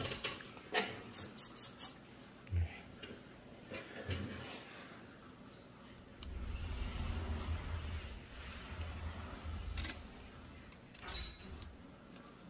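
Close handling sounds of gloved hands working with gauze and instruments on a fingertip: a quick run of light clicks about a second in, a soft knock, then a few seconds of low rustling and a couple more clicks.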